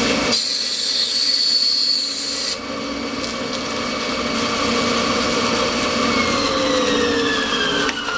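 Bandsaw running, its blade cutting through a strip of ablam shell laminate for about two seconds near the start, heard as a bright hiss over the motor's steady hum. In the last couple of seconds the saw winds down, its pitch falling steadily.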